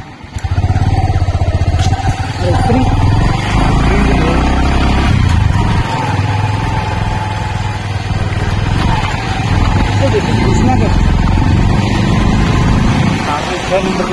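Motorcycle engine that gets much louder about half a second in, then keeps running steadily as the bike rides along.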